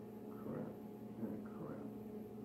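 A low, steady hum with a few faint, soft sounds on top, and no clear event.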